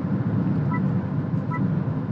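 Steady low road and tyre rumble inside the cabin of a Honda ZR-V hybrid cruising at about 90 km/h on winter tyres. Three short faint beeps about 0.8 s apart sound over it.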